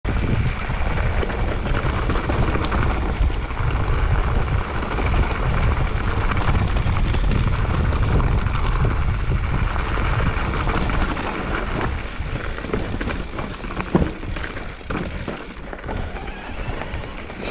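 Wind buffeting the microphone while a mountain bike rolls fast over loose rocks and gravel, its tyres crunching and the bike rattling over the stones. The buffeting eases after about eleven seconds, and there is one sharp knock a couple of seconds later.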